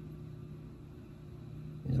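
Quiet room tone with a steady low hum and no distinct sound events; a man's voice comes back right at the end.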